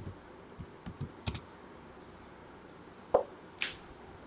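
A few computer keyboard keystrokes, short sharp clicks: a quick cluster about a second in and two more after three seconds, as a question number is typed in by hand.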